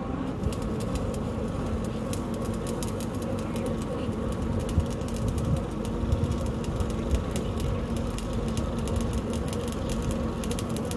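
Borewell drilling rig running: a steady engine drone with a constant hum, over a rapid, even ticking from the drilling, and a few louder knocks around the middle.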